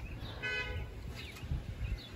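A single short horn toot lasting about half a second, from a car horn, over a low rumble. Two soft low thumps follow near the end.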